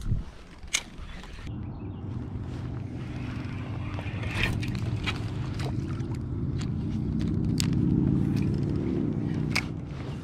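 A boat motor's low, steady hum, swelling to its loudest about eight seconds in and then easing off, with scattered sharp clicks and taps over it.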